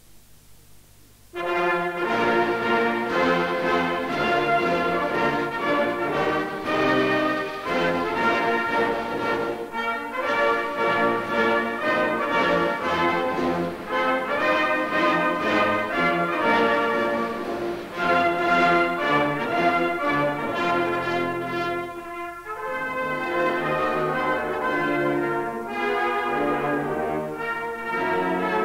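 An anthem played by a brass band or brass-led orchestra, starting about a second in and running on with only a brief dip in level late on.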